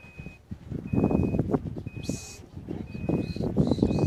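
An electronic beeper sounds a steady high beep about once a second, each beep about half a second long, under irregular low rumbling noise that is louder than the beeps.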